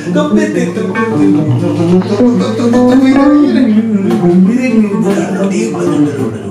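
Electric bass guitar played through an amplifier, a run of notes moving up and down, with a man's voice singing along.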